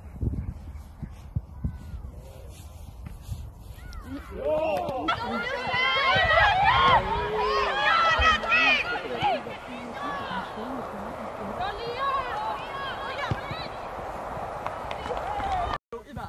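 Low rumbling noise on the microphone, then from about four seconds in many high voices shouting and calling over one another during a football match. The sound cuts off abruptly just before the end.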